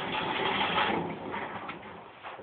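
Rustling and scraping of a person shifting back and settling into a seat, loudest in the first second and fading out.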